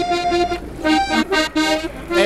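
Accordion playing a melody of held, reedy notes that change every fraction of a second, with a brief break about half a second in.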